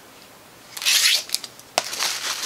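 A Blu-ray case in a clear plastic sleeve being handled and set down: a brief rustling slide about a second in, a few light clicks, and a sharp tap near the end.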